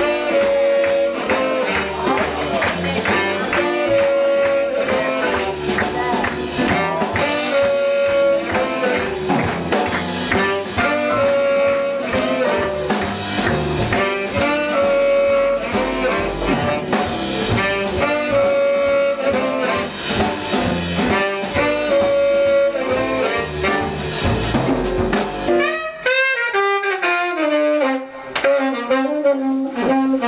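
Live blues from a jazz combo: two saxophones play a repeating riff, with a long held note every few seconds, over piano, double bass and drums. Near the end the rhythm section drops out, leaving a lone melodic line.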